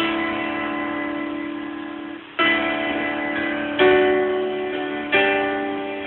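Piano chords in D, an A chord over a D bass leading into the chorus, struck four times, each held and left to fade.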